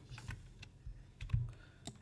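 A handful of faint, irregularly spaced clicks from a computer keyboard and mouse.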